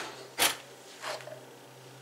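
A metal spoon taps once, sharply, about half a second in, followed by a softer scrape, over a faint steady low hum.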